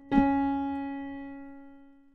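A single piano note played on a keyboard, struck just after the start and left to ring, fading away over about two seconds, as the player picks out notes to work out the song's chords.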